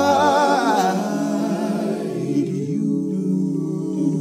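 Layered a cappella vocal harmonies. A lead voice holds a note with vibrato for about a second over sustained backing voices, then the wordless chords carry on alone.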